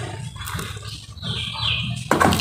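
Hands crushing and crumbling dry cement powder in a bowl, a gritty crunching, over a low rough grumbling sound. A thin high tone joins in the last half second or so.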